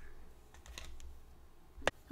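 A faint low hum with a few soft, light clicks, then one sharp click near the end.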